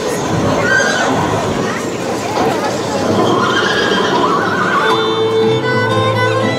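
Horse neighing and hoofbeats, recorded effects opening a Romani dance music track. About five seconds in, violin music begins.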